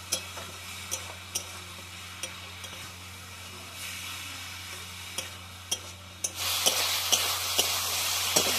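Food frying in a pan and being stirred, the utensil knocking and scraping against the pan every half second to a second over a steady sizzle. About six seconds in, the sizzling suddenly gets much louder and stays loud.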